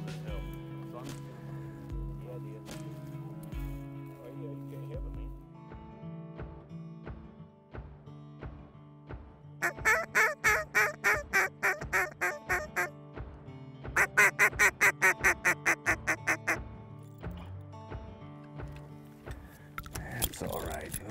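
Background music with a steady beat, joined about halfway through by two rapid runs of duck quacks, each lasting a few seconds.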